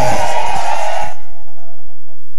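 Congregation voices in a brief response over a held musical note; the voices stop about a second in and the note fades soon after.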